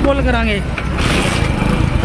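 City street traffic noise: a steady low rumble, with the hiss of a passing vehicle swelling about a second in.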